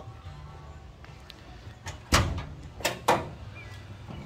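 Hood of a 1967 Plymouth Belvedere GTX being popped open: three sharp metallic clunks, the first and loudest about two seconds in, the other two close together about a second later.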